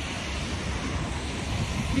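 Wind blowing on a handheld microphone outdoors: a steady rushing noise with a low rumble underneath.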